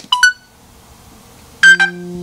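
Insta360 Ace Pro action camera beeping as its record button is pressed to stop recording. A click and a short two-note chirp come right at the start. About a second and a half in, a louder set of chimes sounds, followed by a steady held tone: the camera's stop-recording signal.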